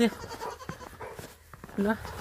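Faint bleating of a young goat with small scattered clicks, and a woman's voice calling briefly near the end.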